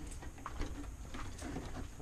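Low, steady background rumble with a few faint clicks and rustles.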